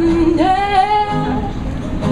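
A woman singing with acoustic guitar accompaniment: a low held note gives way about half a second in to a swoop up onto a higher sustained note.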